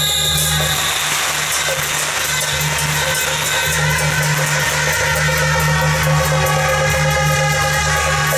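Western-style marching band of trumpets and clarinets playing a tune together, with cymbals and drums keeping a steady beat.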